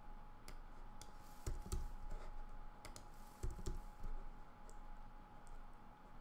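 Computer keyboard typing: scattered key clicks with a couple of heavier clusters of presses, about a second and a half and three and a half seconds in.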